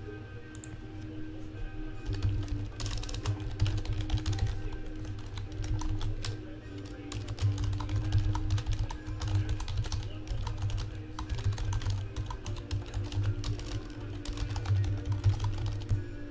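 Computer keyboard being typed on in quick, irregular runs of keystrokes, starting about two seconds in.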